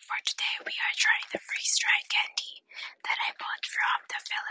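A woman whispering close into an AirPod earbud used as a microphone, in quick unvoiced phrases with short gaps.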